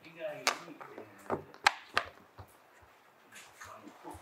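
A few sharp, irregular clicks in the first two seconds, with a little faint speech near the start; the rest is quiet room sound.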